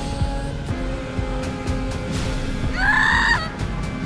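Tense trailer score: sustained tones over low pulsing hits. About three seconds in, a short, loud, high-pitched wailing tone cuts across it for a little over half a second.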